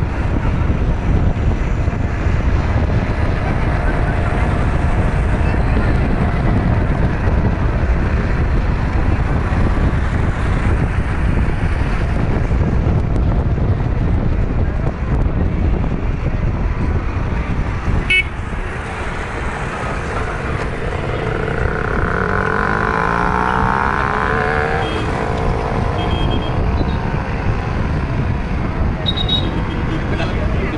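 Steady low rumble of road and wind noise from a moving car in traffic, with a vehicle horn sounding briefly about two-thirds of the way through.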